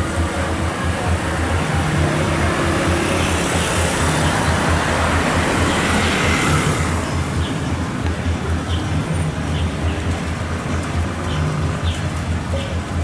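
Street traffic noise with a low, steady engine hum, and a rushing noise that swells and fades around the middle.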